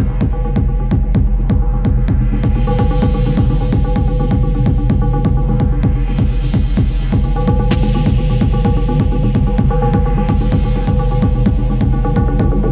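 Live electronic techno from hardware synthesizers and drum machines: a deep pulsing bass drone under held synth tones, with a fast, even clicking beat. A hiss-like noise sweep swells up to a peak about midway and then falls back.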